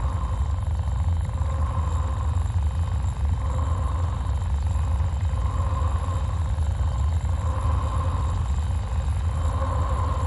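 Synthesized space sound for a spinning pulsar: a steady deep rumble with a soft mid-pitched tone that pulses at regular intervals, about every second and a half to two seconds.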